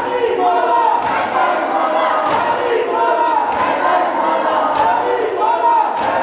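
A crowd of mourners chanting loudly together while beating their chests in unison (matam), a sharp slap roughly every 1.2 seconds.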